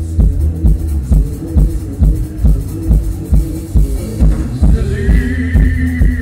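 Live post-punk band playing without vocals, as heard from the audience: a steady drum beat about twice a second over a sustained bass. About five seconds in, a high held note enters.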